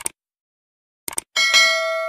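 Subscribe-button animation sound effect: a quick pair of clicks, another pair of clicks about a second later, then a bright bell ding that rings on and slowly fades.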